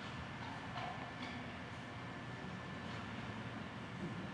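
Faint steady background noise with a low hum, and a few soft ticks in the first half.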